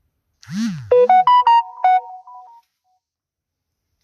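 Short electronic notification jingle, like a phone's ringtone or alert: a low swooping sound, then about five quick clear beeping notes in a little melody that fades out after a second and a half.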